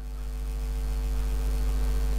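Steady electrical mains hum with a background hiss in the recording, growing slowly louder.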